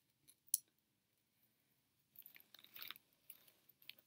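Faint rustling and crinkling of a linen dress and its fabric care tag being handled, with a sharp click about half a second in and a few small ticks near the end.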